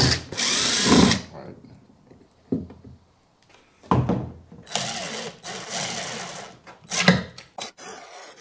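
Cordless drill/driver running in short bursts as it backs out and drives screws. A loud run comes just after the start, then a steadier run of about two seconds past the middle as a screw is driven into the mounting plate, with a few knocks and clicks from handling the plate between.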